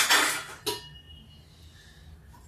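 Stainless-steel kitchen utensils clattering, ending with a sharp clink and a short metallic ring just under a second in.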